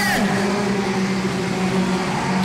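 Engines of several junior sedans, small hatchback speedway cars, running together on the dirt oval as a steady, even drone.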